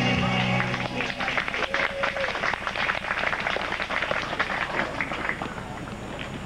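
A song ends about a second in, and a small audience applauds with distinct hand claps that thin out near the end.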